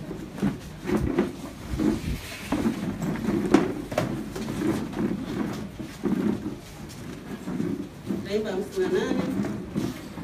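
Speech in a room, with a few sharp knocks, the loudest about three and a half seconds in.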